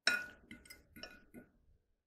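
Metal fork clinking against a ceramic plate while cutting an omelette. One sharp clink with a brief ring at the start is followed by several lighter taps and scrapes.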